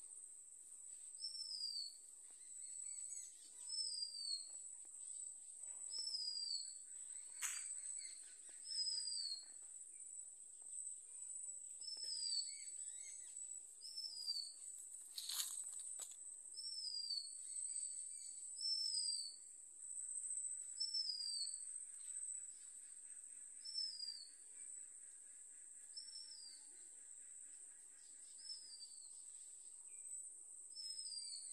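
Outdoor ambience: a steady, high-pitched insect whine, with a short falling bird call repeated about once every second or so. A few sharp clicks stand out, about 7 and 15 seconds in.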